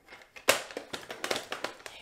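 Paper trimmer's scoring blade being run along its rail to score a line in cardstock: a sharp click about half a second in, then a quick run of ticks and short scrapes.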